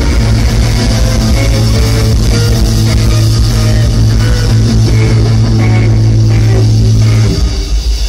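Live rock band playing loud: electric guitar, bass guitar and drums, with a sustained low note held under the playing. A little past seven seconds in the held note stops and the level drops.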